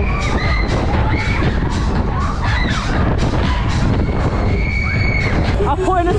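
Loud fairground ride audio: music with shouting and screaming voices over a heavy rumble.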